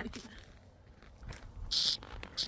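Footsteps on a dry dirt trail while walking downhill, with a short gritty scuff of a shoe near the end.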